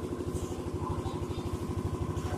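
A small engine running steadily at idle, a rapid, even throb.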